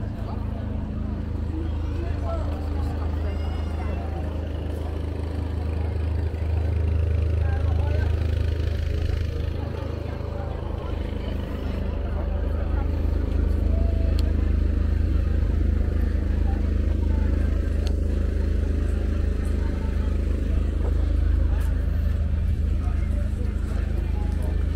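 Busy pedestrian street ambience: passers-by talking in the background over a steady low hum.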